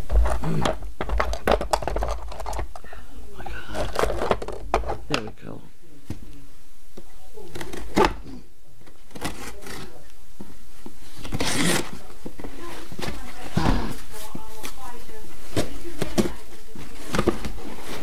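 Cardboard shipping box being handled and unpacked by hand: repeated knocks and scrapes of cardboard, with rustling of packing paper.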